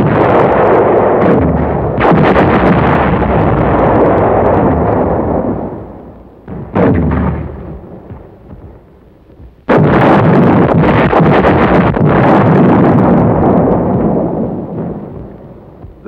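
Artillery shells exploding in a string of heavy blasts, each a sudden bang that rolls on and dies away over a few seconds. Big blasts come about two seconds in and about ten seconds in, with a shorter one near seven seconds and a brief lull before the second big blast.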